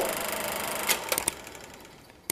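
Sound effect of an animated logo card: a crackling hiss that opens with a thump and slowly fades, with a few sharp clicks about a second in.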